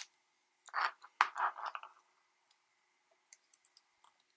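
Fingers handling a micro quadcopter's stacked circuit boards, with small plastic and board clicks and scraping as the flight controller is worked loose from the 4-in-1 ESC. There is a sharp click at the start, two short bursts of scraping about a second in, then a few faint ticks near the end.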